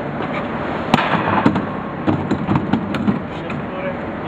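A large plastic tub cart being handled and shifted, giving a run of hollow knocks and clatters. The two sharpest come about one and one and a half seconds in, over a steady background hum.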